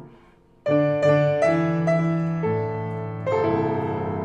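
Grand piano in free jazz improvisation. A chord dies away into a brief pause, then a loud chord is struck just under a second in and several more follow, each left ringing.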